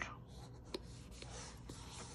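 Faint rustling and rubbing of cardstock as a paper panel is pressed down onto a paper box by hand, with a light tap about three quarters of a second in.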